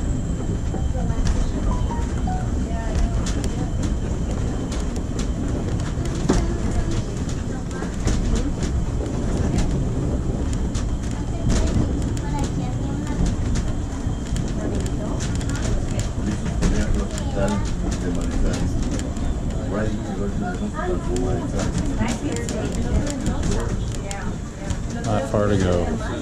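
Duquesne Incline funicular car riding up its steep rail track, heard from inside the car: a steady low rumble with frequent sharp clicks and rattles.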